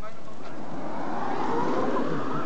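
Eliica eight-wheeled battery electric car driving past, its electric in-wheel motors giving a rising whine as it speeds up, over tyre noise on the road. The whine and tyre noise swell from about a second in.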